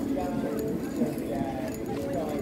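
Indistinct voices of other people talking in the background.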